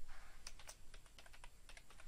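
Computer keyboard typing: a run of faint, irregular key clicks.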